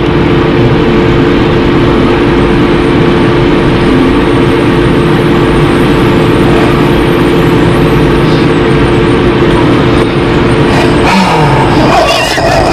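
A loud, steady vehicle drone with two constant humming tones, easing slightly about ten seconds in: an idling vehicle.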